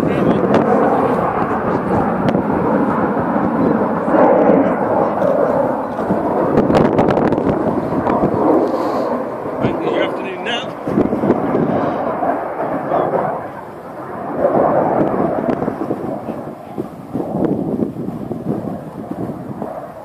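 Avro Vulcan XH558's four Rolls-Royce Olympus jet engines rumbling in flight, fading away in the last few seconds.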